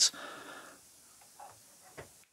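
A short, faint breath out just after speaking, then near quiet broken by a faint tap and a click at the end.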